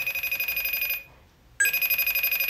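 Telephone ringing with an old-style bell ring, a fast trilling ring heard twice: one ring of about a second, a short pause, then the next ring starting near the end.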